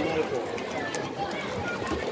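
Indistinct voices of people talking and calling out at a poolside, with water splashing from a swimmer's freestyle strokes.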